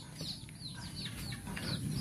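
A bird, faint under low background noise, chirping a quick string of short, high, falling notes, about four a second.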